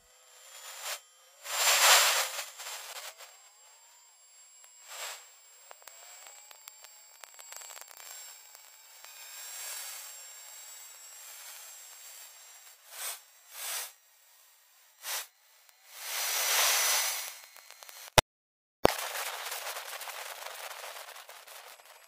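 Stratospheric infrasound recorded by a microbarometer on a high-altitude solar balloon, played back as audio. It is a hiss that swells in bursts, loudest about two seconds in and again around sixteen seconds, with faint rising whistles early on and a few sharp clicks. The sound cuts out briefly near the end.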